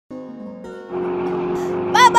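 Background music with steady held notes, joined about a second in by a car sound effect: the steady rush of a car driving up.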